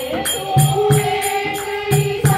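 A woman's voice singing a Hindu devotional bhajan in long held notes, over a steady kirtan beat of drum thumps and jingling percussion at about three strokes a second.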